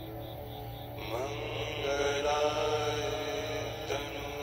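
Meditative music with a voice chanting a mantra in long held notes over a steady low drone; a new chanted phrase begins about a second in, sliding up into a held note.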